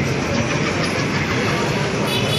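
Steady city background noise heard from high above the street: a dense, even rumble and rush with no single event standing out.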